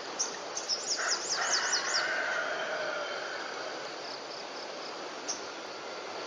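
Birds calling: a quick run of high, falling chirps in the first two seconds over a longer, lower call, then fainter repeated high ticks against steady outdoor background noise.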